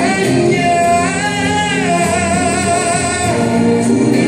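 Man singing a slow song live into a handheld microphone over musical accompaniment, holding two long notes with vibrato in the middle of the stretch.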